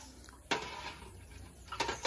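A metal utensil knocking against an aluminium cooking pot: one sharp clink about half a second in, then a few lighter clicks near the end.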